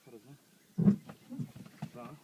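A person's voice: one short, loud vocal sound without words about a second in, followed by softer voice fragments and a few light clicks.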